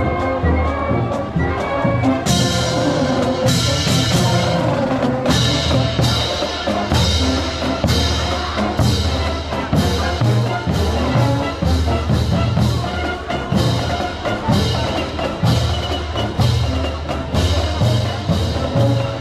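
Marching band playing live: sustained brass with sousaphones carrying the bass, over drums. Sharp percussion strikes in a steady beat join about two seconds in.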